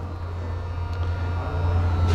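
Steady low hum of workshop background noise.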